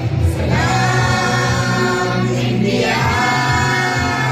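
A group of school students singing together in chorus into microphones, the voices sliding up into long held notes twice over a steady bass accompaniment.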